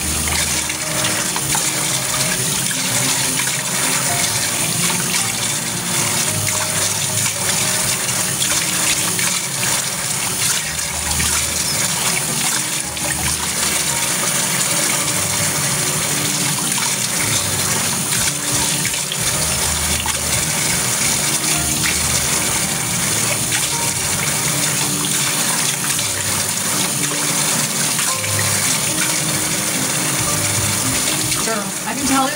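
Tap water running steadily, an even unbroken hiss.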